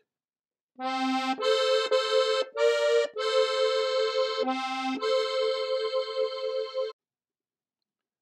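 Strasser four-row button accordion playing seven notes of a waltz melody, one held note after another with its reeds sounding together, the last note held for about two seconds. The notes start about a second in and stop about a second before the end.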